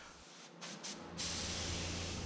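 Gravity-feed automotive paint spray gun triggered: two short blasts, then a steady hiss of air from about a second in, a test spray to check a narrowed fan pattern.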